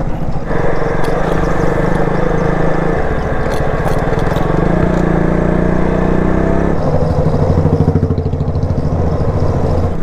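Motorcycle engine heard from the rider's seat, pulling along a rough road. The engine note climbs in pitch from about halfway in, then drops sharply as the next gear goes in.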